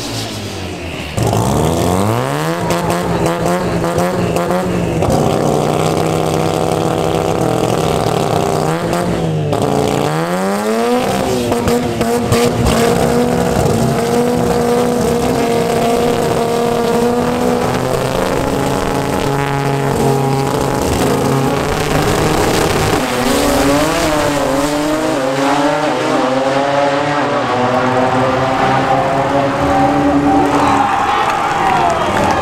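Drag-race Toyota Starlet's engine revving hard with tire squeal through a smoky burnout, the revs sweeping up, holding steady, then sweeping up again. The car then launches and runs at full throttle down the drag strip, the engine note held high and climbing slowly.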